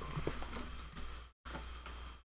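Faint handling noise of a wax pack being drawn out of a cardboard display box, with a few small clicks, over a steady low hum. The sound cuts out completely twice, briefly.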